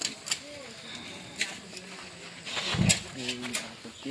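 People's voices talking and calling, with a few sharp knocks and one louder low thump about three quarters of the way through.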